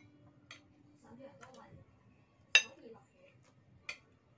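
Metal spoon clinking and scraping against a ceramic bowl while eating: one sharp ringing clink about halfway through, with a few fainter clicks around it.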